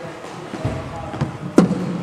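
A single sharp knock of a cricket ball striking, about one and a half seconds in, ringing briefly in the large hall, over faint background voices.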